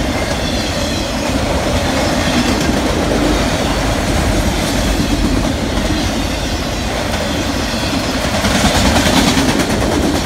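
Empty autorack freight cars rolling past close by, their steel wheels running steadily on the rails, with a brighter, harsher stretch of noise about nine seconds in.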